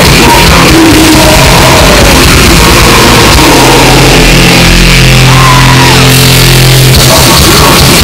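Death metal band playing live, very loud: distorted electric guitars, bass and drums with shouted vocals, and a held low chord through the middle.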